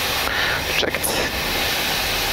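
Steady rush of airflow and engine noise on the flight deck of a Boeing 737-800 in flight, descending on approach.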